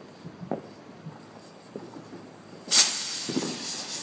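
A ground firework fountain ("Lantern") catching from its fuse about two and a half seconds in, then spraying sparks with a steady loud hiss.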